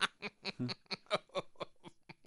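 A man snickering: quick, breathy puffs of suppressed laughter, about six a second, fading toward the end.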